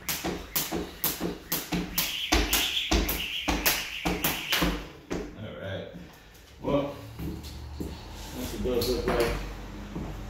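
Skipping rope doing double unders: the rope slapping a hard floor and shoes landing in a quick run of about three sharp taps a second, with a few heavier thuds, stopping about five seconds in.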